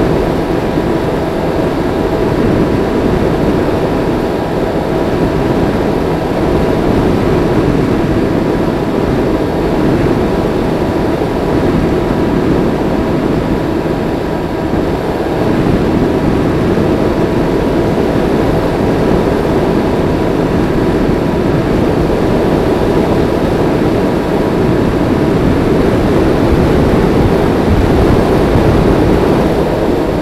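Multiplex EasyStar RC plane's electric motor and pusher propeller running steadily in flight, heard from a camera on board the plane: a rush of airflow noise with a thin, steady motor whine over it.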